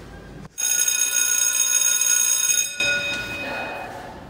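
A bell ringing steadily for about two seconds, starting about half a second in and cutting off abruptly. A few of its tones ring on for another second as they fade.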